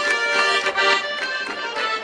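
Circassian traditional dance music: a button accordion playing a melody over a fast, steady percussion beat.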